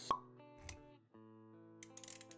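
Intro music with a sharp pop sound effect just after the start, the loudest sound here, then a softer thud a little over half a second in. Quiet, steady musical notes run underneath, and small clicks come back near the end.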